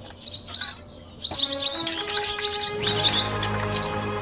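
Intro music with bird chirps over it: high chirps run through the first three seconds, the music comes in about a second in, and a low bass joins near the end.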